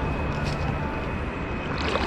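Steady outdoor background noise with a low rumble, from flowing river water and wind on the microphone, with a faint steady tone over it.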